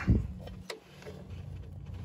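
A dull thump, then a single light metallic click about two-thirds of a second in, from a wrench finishing the tightening of a new oxygen sensor fitted with a crush washer, over a low steady hum.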